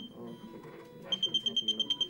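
Prototype ventilator's high-pressure alarm beeping in a fast train of short, high-pitched beeps, about ten a second. The beeps pause briefly and resume about a second in. The alarm signals excess pressure in the breathing circuit, as when the patient's lung is not compliant, and warns the nurse to come and change the setting.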